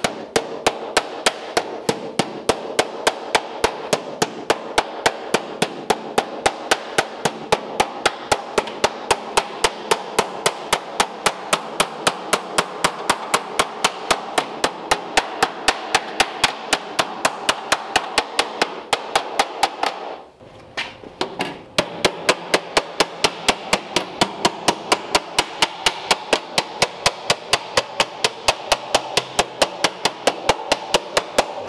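Body hammer tapping the edge of a steel door skin over against a hand-held dolly, hemming it onto the door frame: quick, even metal-on-metal blows, about three or four a second, with one short break about two-thirds of the way through.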